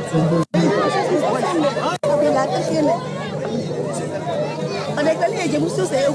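Several people talking at once, unintelligible chatter close to a microphone, over a steady low hum. The sound drops out briefly twice.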